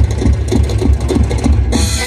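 Live band music with a drum kit keeping a fast, even beat of about four strokes a second, amplified through stage speakers. A cymbal crash comes near the end.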